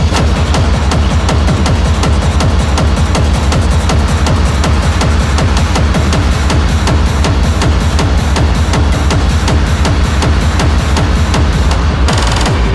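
Hard techno music from a DJ mix: a fast, steady kick-drum beat over heavy, continuous bass.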